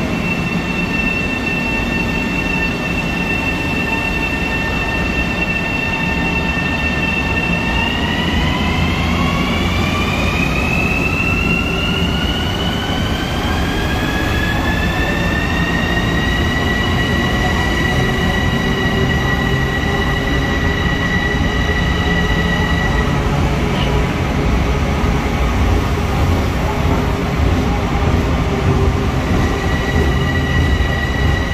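Long Island Rail Road electric train moving out along an underground platform, with a low rumble of the cars. Its high electric motor whine holds steady for several seconds, rises in pitch over about eight seconds as the train gathers speed, then levels off.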